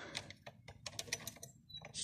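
Faint, irregular light metal clicks of a nut and socket wrench being handled and fitted onto a moped's wheel axle nut.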